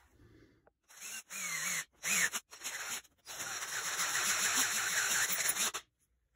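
Electric drill running in four runs, three short and then one of about two and a half seconds, drilling a hole through the bead roller's plate.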